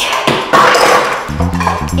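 Background music with a steady low bass line. In the first second or so a brief noisy clatter of toys being handled sits over it.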